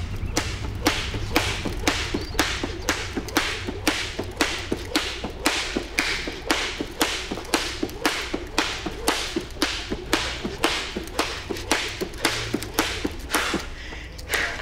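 Skipping rope slapping the floor in a steady rhythm, a little over two strokes a second, with film score music underneath; the strokes stop near the end.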